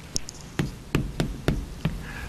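Chalk tapping against a blackboard as it is written with: a series of sharp, irregularly spaced taps.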